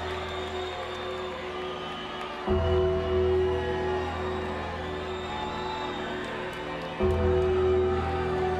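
Slow, sombre wrestling entrance theme with sustained low chords; a new, louder chord comes in about two and a half seconds in and again about seven seconds in.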